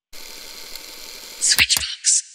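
Logo-ident sound effect: a steady hiss, then a loud whoosh with two sharp hits near the end.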